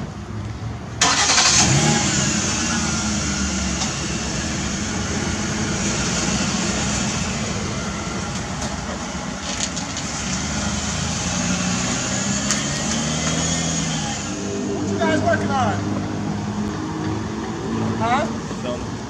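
Ford police sedan's engine starting about a second in, then running as the car pulls away, its pitch rising and falling.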